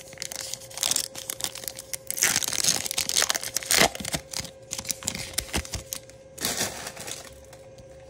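Foil wrapper of a Topps Chrome baseball card pack being torn open and crinkled by hand. The loudest tearing comes about two to four seconds in, with a shorter burst of crinkling about a second in and another near the end.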